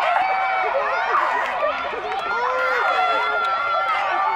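Many high-pitched girls' voices calling and shouting over one another, no single word standing out.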